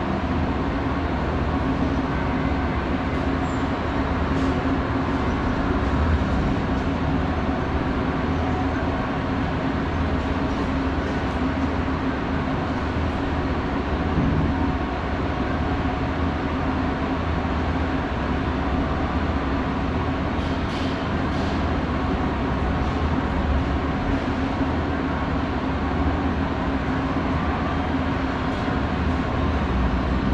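Mitsubishi pallet-type inclined moving walkway (Auto Slope) running: a steady mechanical hum and rumble with a constant low tone, and a few faint clicks about 4 seconds in and again about 20 seconds in.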